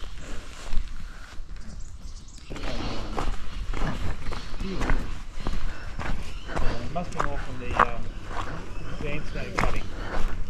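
Indistinct conversation among several men walking together, with footsteps on a dirt track. It is mostly clicks for the first couple of seconds, then near-continuous talk.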